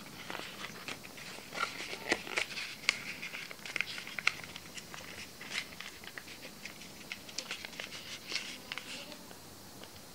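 Corrugated cardboard being rolled by hand around a small glass jar: dry rustling and scraping broken by many small crackles and taps, busiest in the first half and again near the end.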